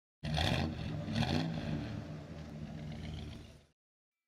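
A car engine revving, surging twice in the first second and a half, then running on until it cuts off abruptly just before the end.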